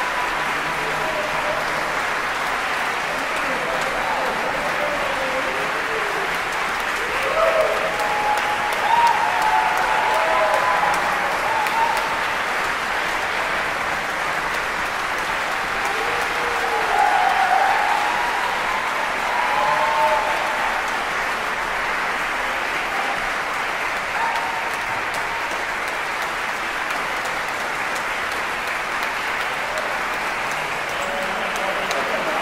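Audience applauding steadily and without a break, with the clapping a little louder around 8 to 10 seconds in and again around 17 seconds.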